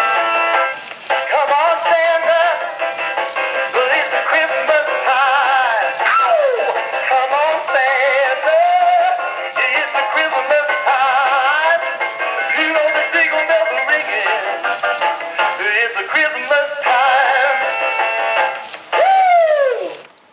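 A battery-powered Twisting Santa animated doll plays a Christmas song with a synthetic male singing voice through its small built-in speaker, thin and without bass. Near the end a falling, sliding sound comes just before it stops.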